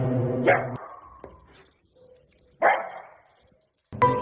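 A dog barking twice, about two seconds apart. The first bark comes over a loud steady droning sound that cuts off just under a second in.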